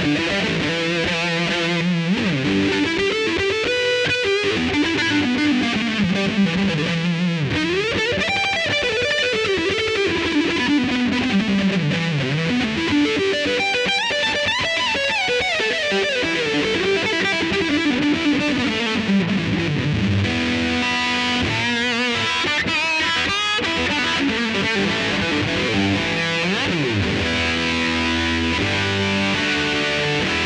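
Electric guitar played through a ProCo RAT distortion pedal, distorted and sustaining. Quick lead runs sweep up and down the neck, with held notes and chords near the start and again in the last third.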